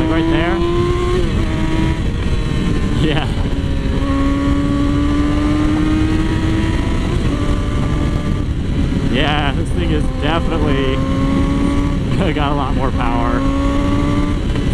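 2007 Yamaha R6's inline-four engine accelerating hard through the gears with a GYTR exhaust. Its pitch climbs steadily, then drops at each upshift, several times over, all under heavy wind rush on the onboard camera.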